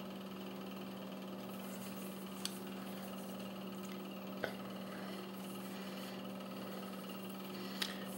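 Steady low hum with two faint clicks, about two and a half and four and a half seconds in, from a stainless 1911 pistol being handled.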